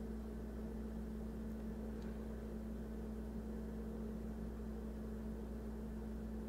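Steady low electrical-sounding hum with a faint hiss: room tone, with a faint tick about two seconds in.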